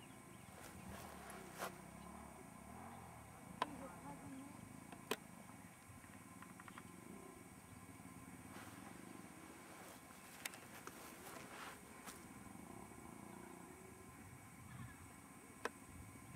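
Near silence: faint outdoor background with a low murmur of distant voices and a few brief, isolated clicks.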